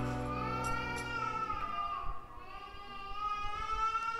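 The end of a church hymn: a final held note, sung with its accompaniment, dies away. The low accompanying tones stop about one and a half seconds in, and the high sung tone fades on.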